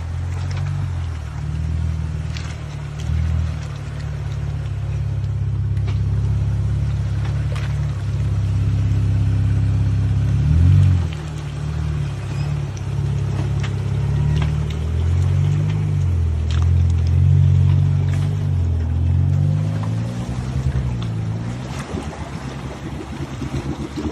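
Jeep Wrangler engine running at low speed while wading through deep muddy water, its note rising and falling several times as the throttle is worked.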